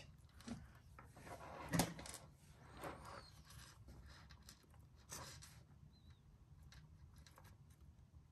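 A few faint clicks of small metal jewellery findings and pliers being handled as a chain link is closed, the loudest click about two seconds in.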